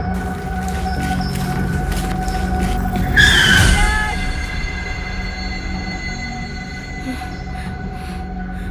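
Suspenseful film score of sustained droning tones, with one loud sound-effect hit about three seconds in whose pitch falls away.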